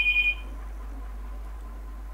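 A high, rapidly fluttering two-tone electronic ring that cuts off about half a second in, followed by a steady low hum.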